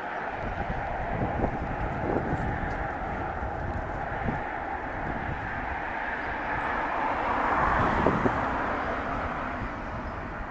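Steady outdoor background rumble with wind gusting on the microphone; the rumble swells to its loudest about eight seconds in, then eases.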